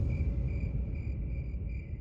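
Crickets chirping in a steady, pulsing high trill over a low background rumble.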